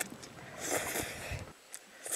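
A person slurping instant ramen noodles off chopsticks: one soft, breathy slurp about half a second to a second in, with a few faint clicks around it.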